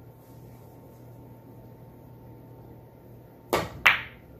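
A soft draw shot on a pool table. Near the end the cue tip strikes the cue ball, and about a third of a second later the cue ball clicks sharply into the object ball; the second click is the louder.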